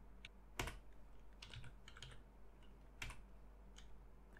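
Computer keyboard keys being typed, faint and scattered, about half a dozen separate keystrokes, while a terminal command is entered.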